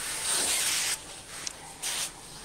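Laurastar steam iron hissing as it shoots steam through fabric on the board for about a second, then a second short hiss near the end.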